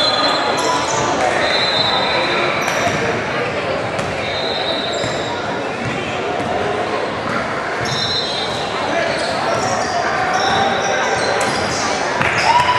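Basketball game in a gym: the ball bouncing, sneakers squeaking several times on the hardwood floor, and spectators talking, all echoing in the large hall.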